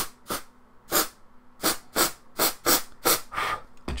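Aerosol freeze spray squirted in about ten short hissing bursts onto a suspected shorted capacitor on a laptop logic board, frosting the board over.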